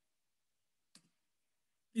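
Near silence broken by one faint computer mouse click about a second in; a man's voice comes in at the very end.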